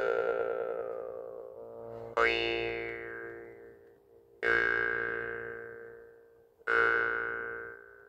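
Jaw harp being plucked and held at the mouth: three twangy plucks about two seconds apart, each ringing as a buzzing drone that fades away, the overtone rising after the first pluck.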